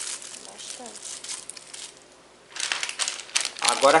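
Plastic bags being handled and crinkling: light crackling of small zip bags of capacitors, a short lull, then louder, denser crinkling in the last second and a half as a large antistatic bag is picked up.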